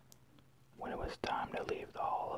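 Near silence at first, then from about a second in a person whispering, reading aloud from a book.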